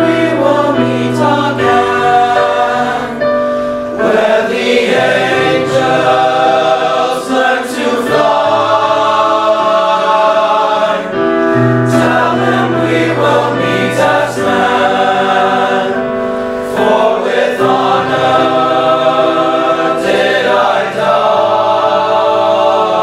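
Boys' high school choir singing in multi-part harmony, holding chords that change every few seconds.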